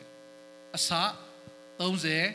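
Steady electrical mains hum, a buzz of many even tones, carried by the microphone and sound system. A short spoken syllable comes about a second in, and speech starts again near the end.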